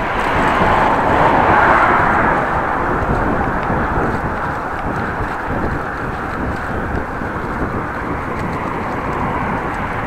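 Steady road noise from cycling on a brick bike path: the bicycle's tyres rolling over the pavers, mixed with traffic on the adjacent road, swelling slightly about one to two seconds in.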